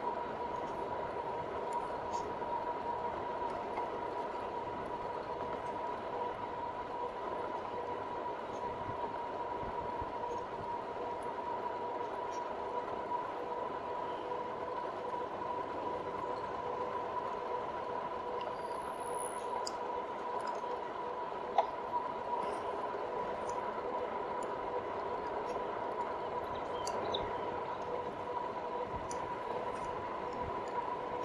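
RadMini Step-Thru electric fat-tyre bike cruising at about 22 mph: steady rolling road and wind noise with a constant high whine. There is one short click about two-thirds of the way through.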